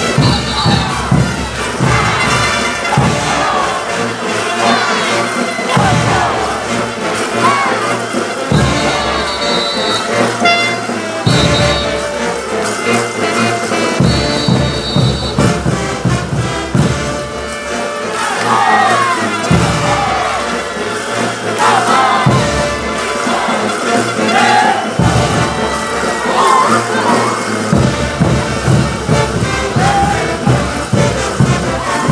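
Brass band playing caporales music, with a strong bass beat that drops out and comes back in regular phrases, and dancers' shouts over it.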